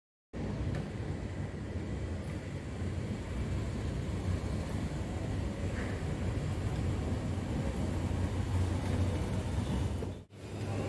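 Gym exercise machine running: a steady low rumble that starts abruptly just after the beginning and holds at an even level throughout.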